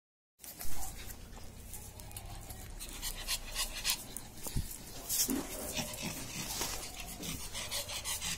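Black pug panting in quick, rapid breaths close to the microphone, with a louder burst just after the start.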